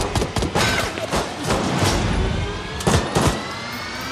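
A rapid, irregular series of gunshots and hard hits from an action film's sound mix, over music with a slowly rising tone underneath.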